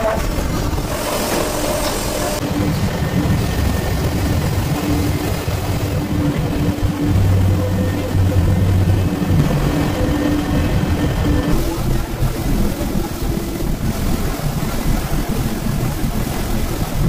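Leather-processing machinery, such as roller and conveyor machines, running with a steady low rumble. The sound changes character slightly at the shot changes.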